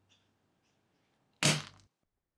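One sharp hammer blow, about one and a half seconds in: a club hammer striking a grey 3D-printed tough-resin fitting lying on a wooden workbench, with a short low ring after the hit.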